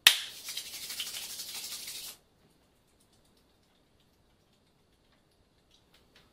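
A single sharp hand clap followed by about two seconds of brisk rubbing of the palms together, a fast, even dry rustle that stops suddenly; after that, near silence.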